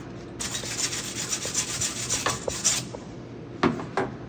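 Wire brush scrubbing a fresh weld on stainless steel in quick back-and-forth strokes, stopping about three seconds in, followed by two sharp knocks.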